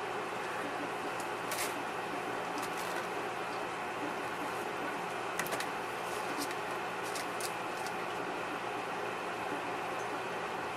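Steady mechanical room hum, like a fan or air conditioning, with a few faint clicks and rustles from handling the brush and parchment paper.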